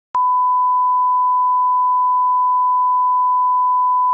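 Steady 1 kHz sine test tone, the line-up reference tone that accompanies SMPTE colour bars, starting with a click just after the start and holding at one unchanging pitch.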